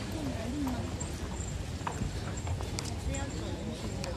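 Busy pedestrian street: voices of passers-by mixed with irregular clicking footsteps on the pavement over a steady low hum of traffic and crowd.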